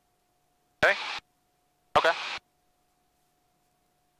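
Speech only: two short words ("okay") over an aircraft headset intercom, which cuts out between them to near silence with a faint steady tone. No rotor or engine sound comes through.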